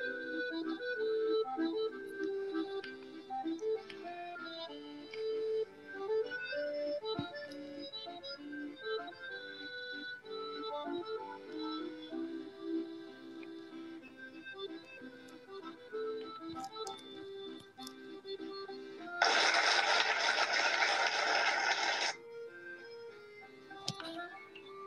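Background music with a melody of short notes from an online emoji race timer playing on a laptop, interrupted by a loud burst of noise lasting about three seconds near the end.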